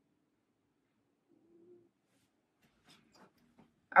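Near silence: room tone, with a few faint soft rustles in the second half.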